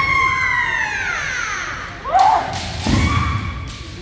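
Kendo fencers' kiai: a long drawn-out shout that falls in pitch over about two seconds, then a second, shorter shout about two seconds in. Heavy thumps on the wooden gym floor run under both shouts.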